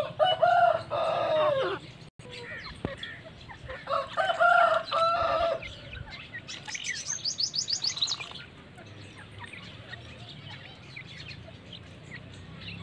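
Fowl calling: two loud, drawn-out calls of about two seconds each, one at the start and one about four seconds in, then a quick run of high chirps near the middle.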